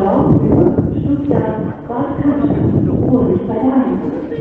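Speech only: a computer-generated German railway announcement voice (the "Blechelse") reading a train announcement over the station PA.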